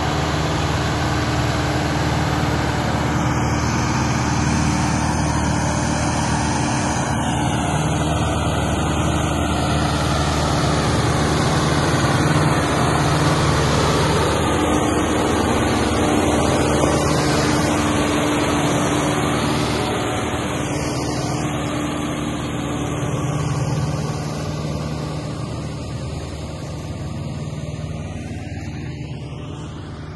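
John Deere 6120B tractor's diesel engine running steadily under load as it hauls a trolley heavily loaded with sugarcane, getting quieter over the last few seconds as it moves away.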